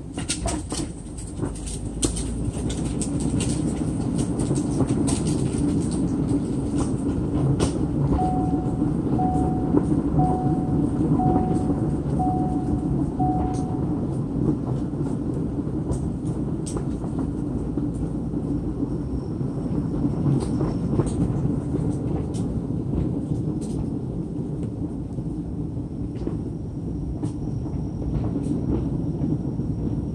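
A car's engine and tyres rumbling steadily as it rolls slowly along a paved driveway, heard from inside the cabin, with scattered clicks in the first few seconds. About eight seconds in, a dashboard warning chime beeps six times, about once a second.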